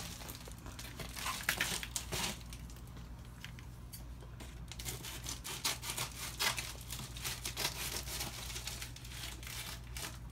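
A padded plastic mailer being cut with scissors and torn open, its packaging crinkling and crackling in irregular bursts that come thickest in the second half.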